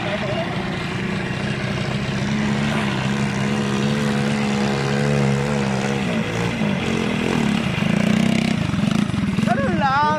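Quad bike engines running: a steady engine hum whose note changes about six seconds in, as a rider climbs the rocky sand slope. A man starts talking near the end.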